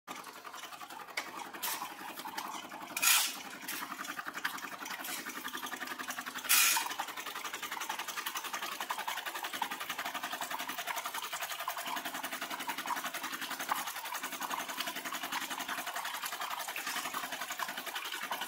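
Whole roasted coffee beans clattering into the clear plastic tray of a digital kitchen scale, loudest about three and six and a half seconds in, over a fast, even, machine-like rattle.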